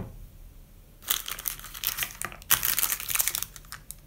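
Thin clear plastic packet crinkling as it is handled and set down on a table, in two stretches of about a second each.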